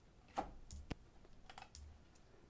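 A handful of faint, separate clicks from a computer keyboard and mouse as tool shortcuts are pressed and objects are picked in the modelling program.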